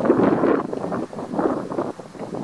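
Wind buffeting the microphone in loud, uneven gusts.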